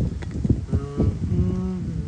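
A low, mooing sound, like a cow's lowing. It starts rough and then settles into drawn-out pitched notes in the second half.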